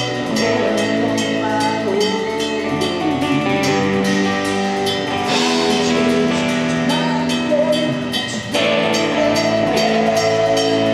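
Live rock band playing: electric guitars, bass guitar and drum kit. The full band drops out for a brief moment about eight and a half seconds in, then comes straight back.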